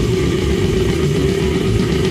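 Loud extreme metal from a demo recording: heavily distorted guitars hold one steady low note over dense drumming.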